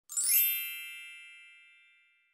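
A short intro chime: one bright, bell-like ding with a quick shimmering rise that rings out and fades away over about two seconds.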